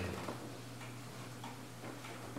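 Quiet room tone: a steady low hum with faint, regular ticking.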